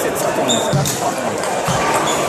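Table tennis ball bouncing with a few sharp clicks, over a steady background of voices chattering in the hall.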